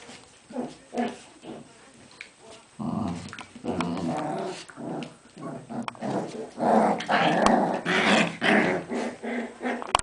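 Cairn terriers, a puppy and its mother, growling as they tussle in play. The growls are short and sparse at first, then louder and almost continuous from about three seconds in, loudest in the last third.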